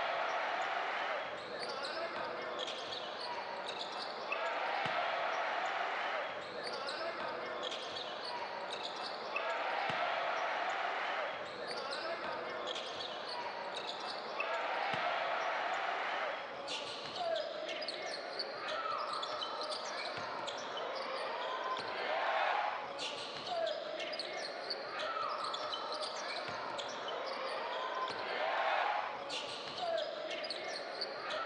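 Basketball game sound in an echoing arena: indistinct crowd voices, with a ball bouncing on the hardwood court now and then. In the second half come short, sharp squeaks, typical of sneakers on the floor.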